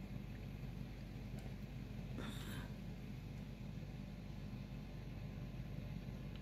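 Faint, steady outdoor background noise with a low hum, and a brief rustling noise about two seconds in.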